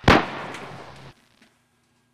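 A single loud, sharp bang like a gunshot, with a decaying tail of about a second that cuts off abruptly.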